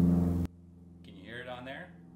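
Small plane passing overhead, a steady engine drone picked up by a phone-mounted Rode VideoMic Me, which cuts off suddenly about half a second in. After the cut there is a much quieter steady hum and a brief faint voice.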